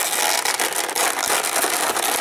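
Clear plastic blister packaging crinkling as fingers handle it, a dense, continuous crackle.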